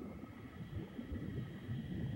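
Muffled underwater sound: an uneven low churning rumble, with a few faint steady high tones above it.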